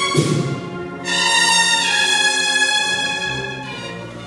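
A cornet-and-drum band's cornetas holding a sustained brass chord, with a percussion crash just at the start. A new, louder chord comes in about a second in and slowly fades toward the end.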